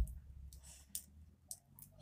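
Lilla Rose Flexi Flip, a beaded metal hair clip, being handled and flipped over in the fingers to switch it from its smaller to its larger size: a soft knock at the start, then a few light, scattered clicks.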